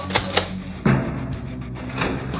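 Nerf dart blaster shooting at plastic cups: two sharp clicks, then a louder burst of noise just under a second in, over background music.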